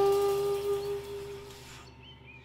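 Saxophone holding one long note at the end of a phrase, fading away over about a second and a half.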